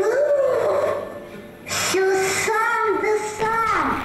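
A child's solo singing voice: a sliding phrase in the first second, a short pause, then a run of held notes.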